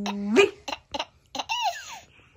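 A seven-month-old baby laughing in about four short bursts, the last one longer with a pitch that rises and falls. Just before the laughs, a woman's long held "uu-wei" call rises at its end.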